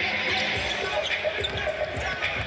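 A basketball being dribbled on a hardwood court: a run of low bounces starting about half a second in, under the steady hubbub of an arena crowd in a large hall.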